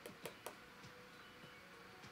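Near silence with room hiss, broken by three faint, sharp clicks in quick succession near the start.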